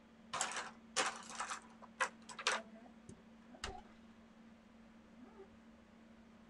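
A run of short, scratchy pencil strokes on a paper sketch pad in the first two and a half seconds, then a single soft thump about three and a half seconds in. A steady low hum runs underneath.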